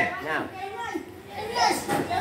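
Only speech: young children's voices and chatter in a classroom, with a man saying a short word near the start.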